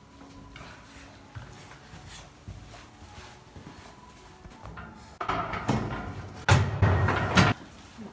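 Handling noise from a crypt's sealer plate and a felt-covered board being moved: a few light knocks, then from about five seconds in a run of louder scrapes and thuds.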